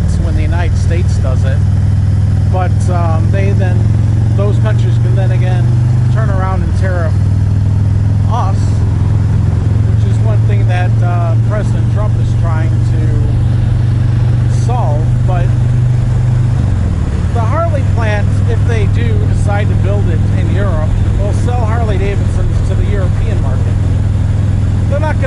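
Harley-Davidson touring motorcycle's V-twin engine running at highway speed, a steady low drone that dips in pitch twice, once about a quarter of the way in and again about two-thirds through, with the rider's voice talking over it.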